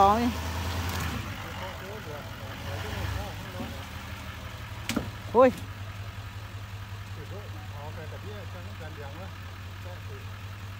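Chevrolet Silverado 2500HD pickup's engine running at low revs, a steady low hum that swells briefly about three seconds in while the truck sits in mud. A short vocal exclamation comes about halfway through, and faint voices follow near the end.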